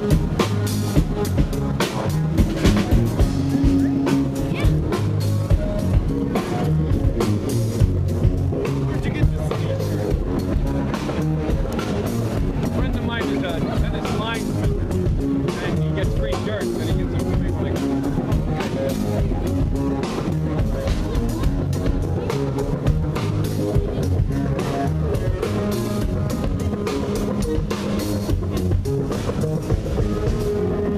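Live band with a drum kit and electric guitar playing through a PA, a steady beat of drum strokes under the guitar; the band is running through a warm-up practice before its set.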